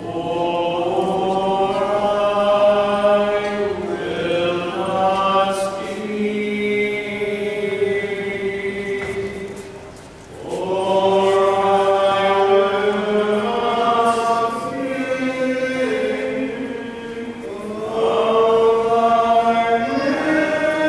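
Liturgical chant of the Divine Liturgy sung during the giving of Holy Communion: voices holding long, slow phrases, with short breaks about halfway through and again near the end.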